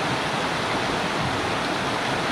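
Shallow rocky stream rushing over stones in a steady, even flow.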